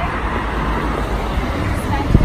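City street traffic noise: a steady rumble of passing cars.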